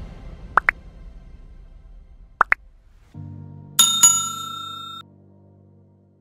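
Sound effects of an on-screen subscribe-button animation: two pairs of quick rising plops about two seconds apart, then a bright bell struck twice over a low sustained music chord, all stopping about five seconds in.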